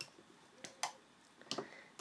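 A few light plastic clicks of a loom hook and rubber bands against the pegs of a plastic Rainbow Loom while a band is placed, the loudest just under a second in.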